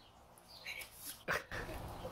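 A dog barks once, short and sharp, about a second and a quarter in, with a couple of fainter calls just before it.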